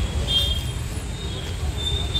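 Street traffic noise: a steady low rumble of road vehicles, with a short high tone about half a second in.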